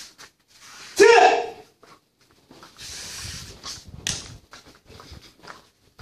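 A martial artist's kiai: one loud, sharp shout about a second in. After it come quieter breathing and short rustling sounds.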